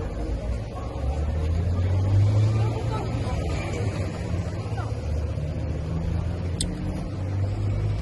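City street traffic: a low, steady vehicle engine hum that swells as traffic passes, loudest a couple of seconds in.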